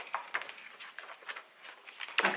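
Paper being handled and leafed through: a string of short, irregular rustles and crackles.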